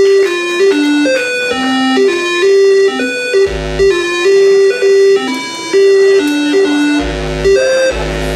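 Simple computer-generated music from a 256-byte demoscene intro: a quick stepping melody of held electronic notes, with two deep bass thuds, about midway and near the end.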